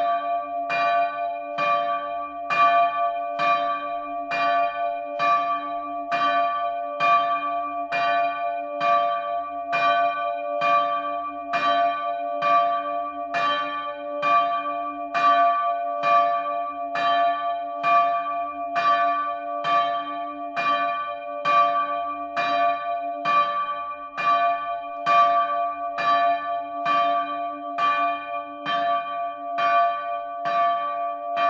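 A swinging bronze church bell rung close up in its wooden belfry frame. The clapper strikes in a steady, even rhythm of about one and a half strokes a second, and each stroke's ringing hum carries on into the next.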